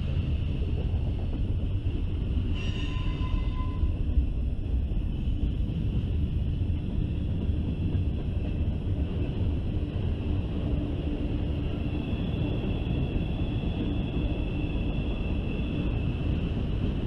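Freight cars of a long mixed freight train rolling past: a steady low rumble of steel wheels on rail. Thin high-pitched wheel squeals ride over it, with one short sharp squeal about three seconds in and a steadier squeal in the last few seconds.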